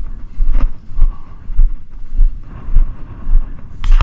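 Footsteps wading through tall dry grass at a steady walking pace, each stride a low thud about every 0.6 s, with the grass swishing and wind buffeting the microphone.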